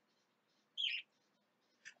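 A single short, high bird chirp a little under a second in, against quiet room tone.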